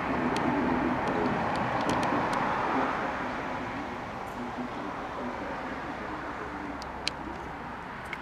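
Outdoor city ambience: a steady rush of road traffic, louder in the first three seconds and then easing off. A few light clicks, the sharpest near the end.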